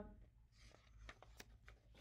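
Near silence with the faint rustle and small clicks of a paperback picture book being flipped open and its pages handled, a soft rustle about half a second in.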